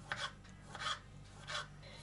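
Kitchen knife slicing through vegetables onto a wooden cutting board: three short scraping cuts, about two thirds of a second apart.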